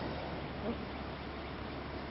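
Faint steady background noise: an even hiss with a low hum, and one brief faint sound about two-thirds of a second in.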